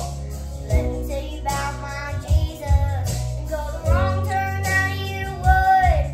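A young girl singing a song over an instrumental accompaniment, holding notes that bend up and down, with a regular low beat underneath.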